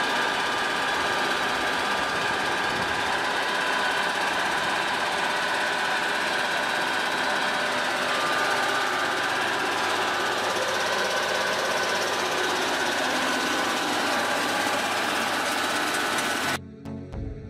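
Sreedhar No. 8 huller rice mill, driven by an electric motor, running steadily while husking paddy: a continuous, even mechanical noise with a steady whine in it.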